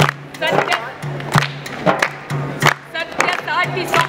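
A group singing a Marathi Dalit protest song to a steady percussive beat with hand clapping, strong strokes about every second and a quarter and lighter ones between.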